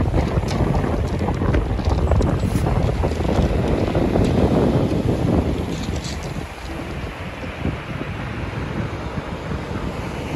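Strong wind buffeting the microphone over waves breaking on a shingle beach, loudest midway and easing in the second half.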